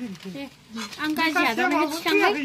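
Speech only: people talking, louder in the second half.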